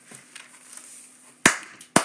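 Two sharp knocks about half a second apart, near the end of a short quiet pause.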